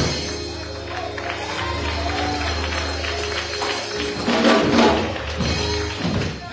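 Live church music: instruments holding a low bass note and a sustained chord, with scattered hand claps and voices from the congregation.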